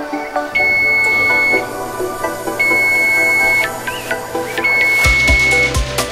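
Electric range's oven timer beeping three long beeps, about a second each and a second apart, signalling that the timer has run down to zero. Background music plays underneath.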